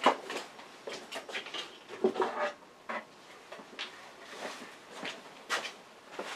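Scattered knocks, clicks and rustles of gear being handled while a face shield is fetched and put on. There is no machine running.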